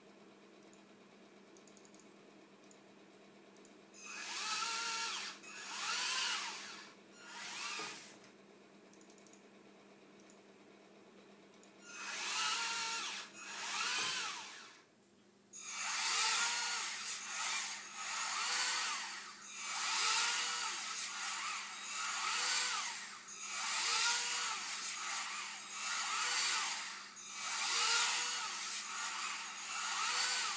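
Small screwdriver gear-motors whining as they wind and unwind the robot's tendons, each burst rising and then falling in pitch. Three bursts come a few seconds in and two more about halfway, then a fast run of bursts about every second and a quarter. A steady low hum sits underneath.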